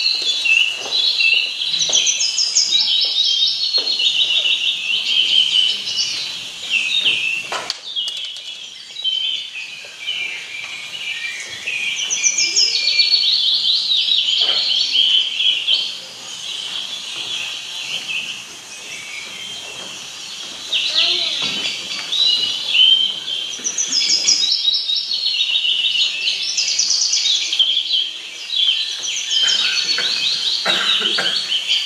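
A recorded chorus of many songbirds chirping and trilling, played over a hall's loudspeakers. It thins out twice before swelling again. Faint scattered knocks sound underneath.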